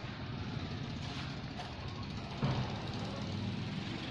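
A motor vehicle's engine running steadily in the background as a low hum, with a brief louder low thump about two and a half seconds in.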